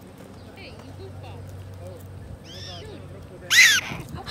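Black-tailed prairie dog giving short, high-pitched, chirp-like barks: a faint one a little past halfway and a loud one near the end.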